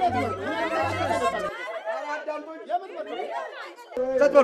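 Several voices talking over one another in a jumble of chatter.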